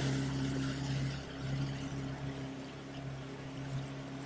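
Motorboat engine running steadily underway, a constant low drone with the rush of water and wind over the hull.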